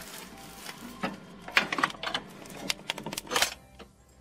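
Irregular metallic clicks and clatter from a multi-fuel boiler's firebox door as it is unlatched and swung open, with the loudest clack shortly before the end.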